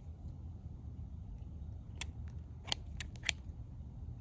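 Trauma shears with epoxy-coated handles being worked open and shut, the steel blades giving several sharp clicks in the second half.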